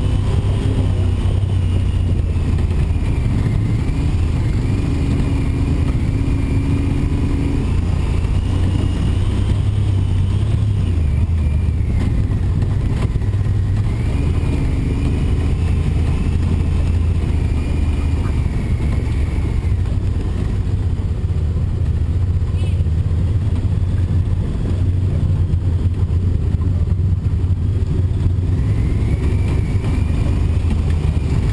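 Side-by-side UTV engine running steadily under way on a gravel trail, heard from on board, with a high whine that rises and falls as the speed changes.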